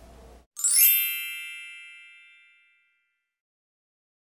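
A sparkly chime sound effect: a quick upward shimmer into a bright, many-toned ding that rings out and fades over about two seconds.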